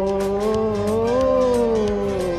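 One long sung note, held with a slow rise and fall in pitch, over devotional music with a steady percussion beat.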